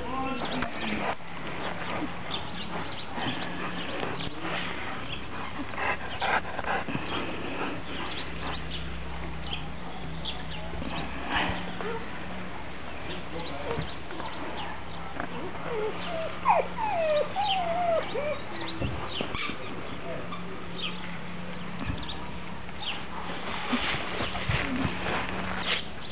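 Bernese mountain dog whimpering, a few short whines that bend up and down about two-thirds of the way through, over a steady low hum.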